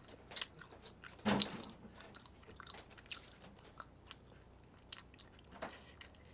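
A person chewing food close to the microphone, with scattered small mouth clicks and one brief louder sound about a second in.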